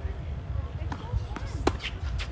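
Tennis ball bouncing on the hard court with a fainter knock, then struck with a slice backhand about a second and a half in: a sharp pop of racket on ball, the loudest sound.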